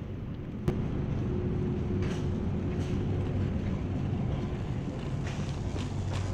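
Shopping cart rolling over a concrete floor: a steady low rumble with a faint hum, and one sharp click just under a second in.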